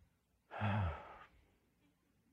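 A man sighs once: a breathy exhale with a short falling voiced tone, starting about half a second in and lasting under a second.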